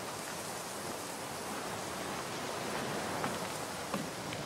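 Steady hiss of outdoor ambience with a few faint taps in the last second.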